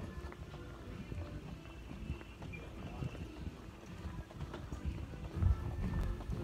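Walking on a hard store floor: irregular footfalls and small knocks, with faint background music and distant voices.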